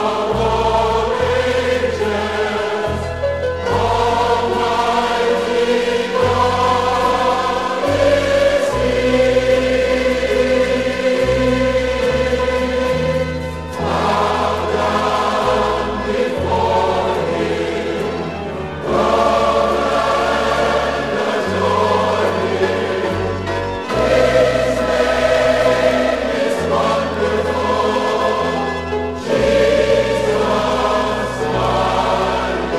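A choir singing a gospel hymn in long held phrases over instrumental accompaniment, whose sustained bass notes change every second or two.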